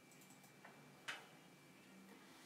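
Near silence with a faint tick about half a second in and a sharper single click about a second in.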